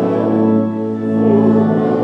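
Slow church music: full chords held steadily on a keyboard instrument, moving to a new chord partway through.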